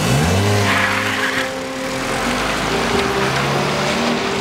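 A car pulling away and driving off: the engine rises in pitch as it accelerates off the line just at the start, then runs on with tyre and road noise.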